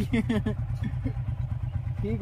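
Small single-cylinder commuter motorcycles idling with a steady low rumble, with brief voice sounds in the first half.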